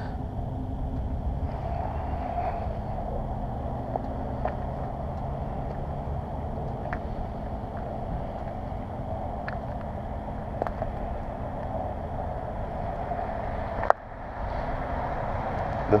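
Steady outdoor background noise, a low rumble with a hiss above it, broken by a few faint ticks and one sharp click near the end.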